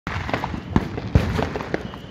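Fireworks and firecrackers going off: a continuous crackle of small cracks with several louder sharp bangs spread through it.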